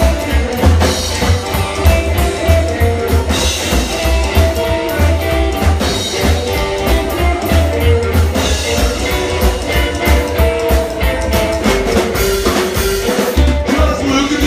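Live rockabilly band playing an instrumental passage: plucked upright double bass pulsing steadily, drum kit with cymbals, and a hollow-body electric guitar playing a lead line.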